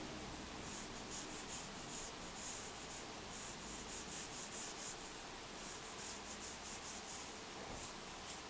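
Coloured pencil scratching on colouring-book paper in runs of quick short shading strokes, with a brief pause about five seconds in; faint.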